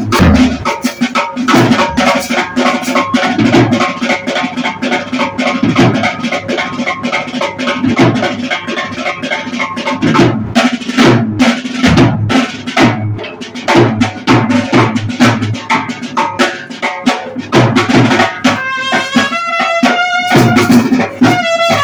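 Live brass-band drum break: a side drum played fast with sticks over deep strokes on a large bass drum, in a busy, steady rhythm. Near the end the trumpet comes back in over the drums.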